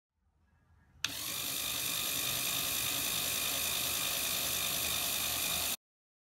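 Lego Technic plastic gear train, motor-driven, whirring steadily with a gritty mechanical grind. It starts suddenly about a second in and cuts off abruptly shortly before the end.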